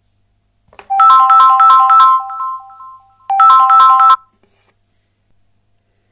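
A phone ringtone: a quick, bright three-note melody cycling over and over, played in two bursts, the first ending on a held note that fades, the second cut off abruptly after about a second.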